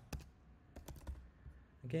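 Computer keyboard being typed on: a handful of separate keystrokes clicking.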